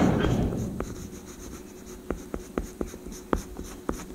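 Oil pastel rubbing and scratching on drawing paper, close to the microphone, in a run of short, sharp strokes in the second half. A louder low rumble fades away over the first second.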